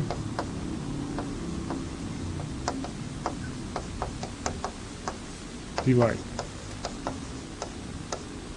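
Chalk clicking against a blackboard as a diagram is drawn: a series of short, sharp, irregularly spaced ticks.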